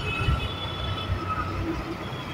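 Riding noise from a scooter in motion, picked up by a helmet-mounted microphone: a steady engine drone under a low, uneven wind rumble, with a few faint steady higher tones.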